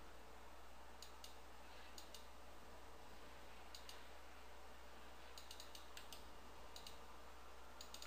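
Faint computer mouse clicks, about a dozen, some single and some in quick runs, over a steady low hum and hiss.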